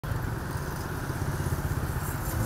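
Motorbike engines running in street traffic, a steady low rumble.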